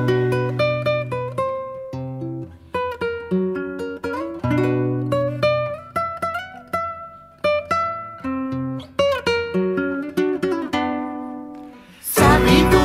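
Charango picking a huayno melody over guitar bass notes in an instrumental passage without singing. The notes ring and decay, and the phrase dies away near the end.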